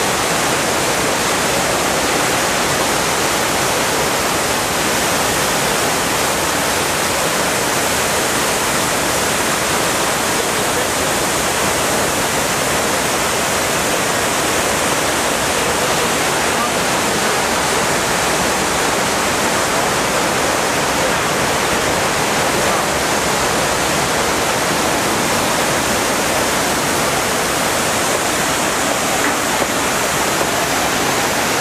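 Steady rush of water cascading down the walls of the 9/11 Memorial reflecting pool and into its square central void.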